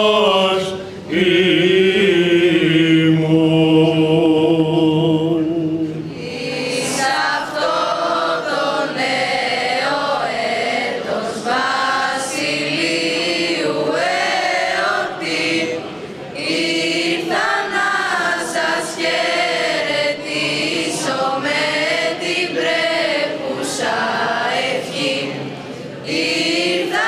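A solo male voice chanting in Orthodox style and holding one long steady note, then, from about six seconds in, a choir of teenage girls and boys singing together.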